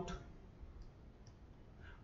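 Two faint clicks of a stylus tapping a tablet screen while annotating in red ink, over a low steady room hum.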